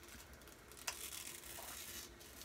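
Faint handling of a whitening strip as it is peeled from its plastic backing, with one small sharp click about a second in.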